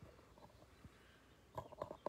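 Marker squeaking in a quick run of short strokes on the rough side of deerskin leather, starting about one and a half seconds in after near silence.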